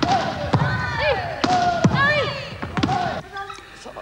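Volleyball drill in a gym hall with wooden floors: about five sharp hits as the ball is struck and slaps onto arms and the floor, mixed with players' short shouted calls. It quietens about three seconds in.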